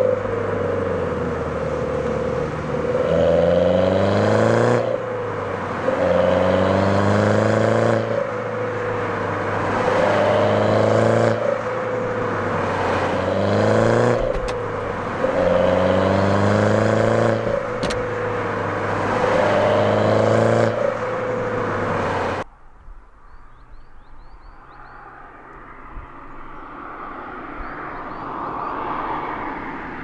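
MINI Roadster's engine pulling hard, its pitch climbing and then dropping back again and again, about every three seconds. It then gives way abruptly to a quieter stretch in which a car is heard growing louder as it approaches.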